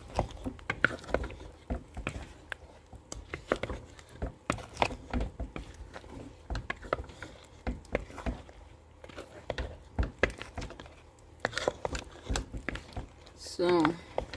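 Thick ogbono soup with its meat and fish boiling in a pot, bubbles bursting in short, irregular pops.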